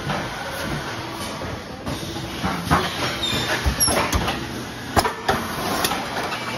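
Industrial thermoforming machinery running with a steady mechanical noise and air hiss, broken by several irregular sharp clanks.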